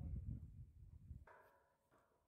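Faint low wind rumble on the microphone, fading and cutting off just over a second in, then near silence.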